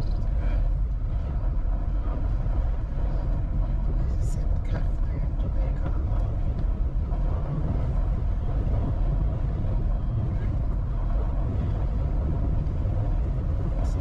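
Steady low rumble of a car's engine and tyres on a rough, patched road, heard from inside the cabin.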